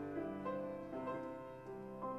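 Slow keyboard music, most likely piano, with held notes and new notes coming in about every half second.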